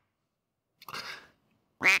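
A short comic duck-quack sound effect, heard once about a second in, between stretches of dead silence.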